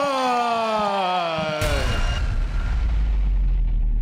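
A long, drawn-out held call, falling slowly in pitch, is cut off about one and a half seconds in by a sudden deep boom whose low rumble slowly fades.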